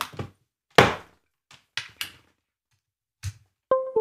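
Knocks and clicks of a USB cable being plugged into an Alchitry Au FPGA board, then near the end the two-note Windows chime that signals a newly connected USB device.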